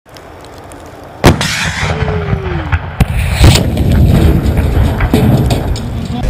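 RPG-7 rocket-propelled grenade fired with a sharp blast about a second in, the rocket flying off with a whine that falls in pitch. Then comes another sharp crack, a louder blast just after it, and a low rumble under it all.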